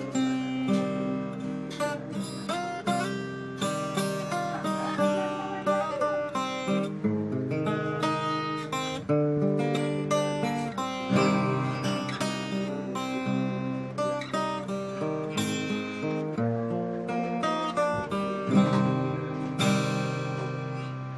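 Acoustic guitar played solo: chords strummed and single notes picked in quick succession, without singing.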